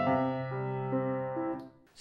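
Acoustic piano playing the closing notes of a slow piece: a few melody notes over held low left-hand chord notes, the sound dying away about one and a half seconds in as the piece ends.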